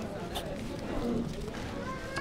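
Faint, indistinct voices of people talking in the background, with a light tap about a third of a second in.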